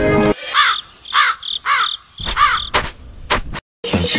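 Music cuts out, and a crow caws four times, evenly spaced, followed by a few sharp clicks. This is a comic sound effect over the clip.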